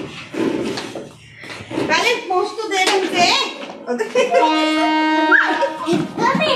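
Voices talking, young children's among them; about four seconds in, one voice holds a single steady note for about a second.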